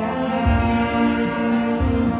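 Saxophone ensemble of three saxophones playing a slow melody in long held notes, over deep bass notes of an accompaniment.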